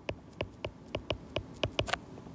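Stylus tapping and ticking against a tablet screen while handwriting a word, about a dozen sharp, irregularly spaced clicks.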